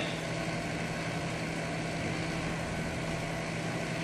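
Steady low machine hum with a droning tone, unchanging throughout.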